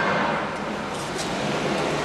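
Steady rushing background noise with a faint low hum beneath it.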